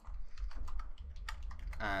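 Computer keyboard typing: a quick run of keystrokes as a name is typed in, several clicks a second.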